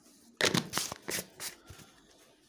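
Dry rustling and crackling while ground coriander is added to the kofta mixture. It is a run of quick crackles lasting about a second and a half, starting about half a second in.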